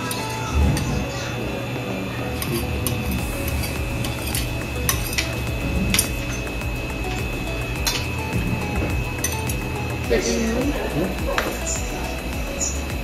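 Metal spoons and forks clinking and scraping against plates, in short scattered clicks, over a steady low hum.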